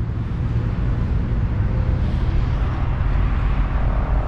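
Steady low outdoor rumble with a faint hiss above it, even in level throughout.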